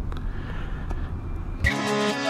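Low, steady rumble of a Harley-Davidson Street Glide's V-twin engine idling, cut off about a second and a half in by music starting.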